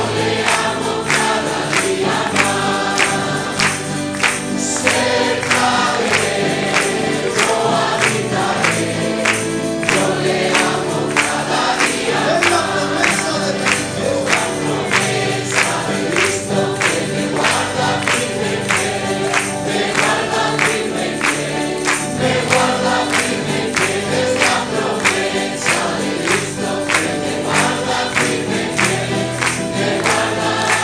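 Congregation singing a praise song together, with steady rhythmic hand-clapping in time.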